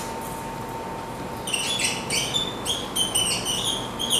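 A whiteboard marker squeaking in a quick run of short strokes as words are written, starting about a second and a half in. A faint steady tone runs underneath.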